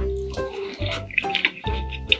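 Background music with held notes and a bass line, over close, wet chewing of a mouthful of sushi.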